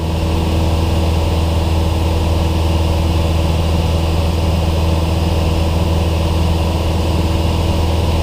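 Cessna 172's single piston engine and propeller droning steadily in level cruise flight, heard inside the cabin.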